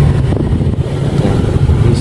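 Low, steady rumble inside a moving car as it drives slowly, with wind buffeting on the phone's microphone.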